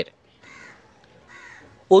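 Two faint crow caws, about a second apart.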